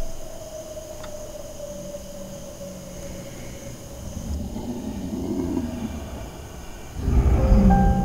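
Dark horror film score: a low rumbling drone with one held tone that slowly sinks, swelling a little near the middle, then a loud low boom about seven seconds in as a new run of held notes begins.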